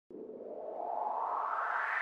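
Synthesized rising whoosh, an intro sound effect. A band of hiss starts suddenly and sweeps steadily upward in pitch, growing louder.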